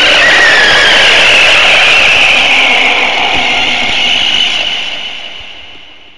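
Loud, harsh noise effect that starts abruptly, holds steady for about four seconds, then fades away.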